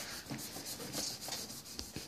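Pencil drawing on a spiral sketchbook page: faint, quick scratchy rubbing on paper, with a light tap near the end.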